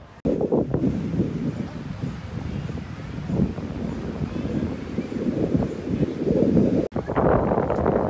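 Wind buffeting the microphone: a loud, low rumbling rush that swells and drops in gusts. After a cut about seven seconds in, the wind noise turns brighter and hissier.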